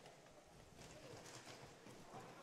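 Near silence: faint sound of a roller hockey game on an indoor court, with a few faint clicks of play in the second half.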